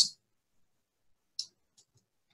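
Near silence with one short, faint click about one and a half seconds in and a couple of fainter ticks near the end.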